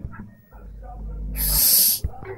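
Breathy noise right on the microphone: a low rumble from about half a second in, then a loud hissing rush lasting about half a second near the end, like a child breathing or hissing into the device up close.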